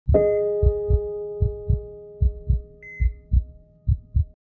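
Heartbeat sound effect: pairs of low lub-dub thumps, five beats at a steady pace of about 75 a minute, under a struck sustained chord that fades away slowly. A brief high ding sounds near the middle.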